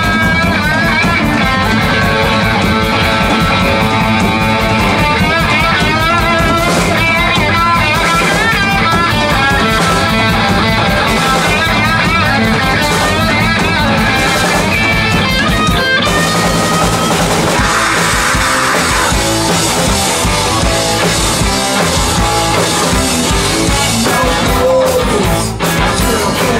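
A live rock band playing loud: electric guitars, electric bass and a drum kit.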